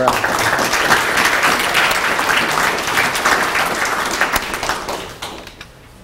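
Audience applauding, the clapping dying away about five seconds in.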